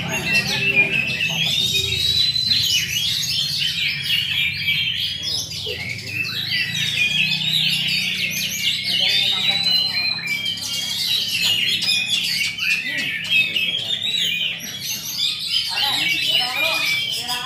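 Several caged songbirds in a singing contest, all singing at once in a dense, continuous chorus of chirps, trills and whistles. A few clear rising whistles stand out from the rest.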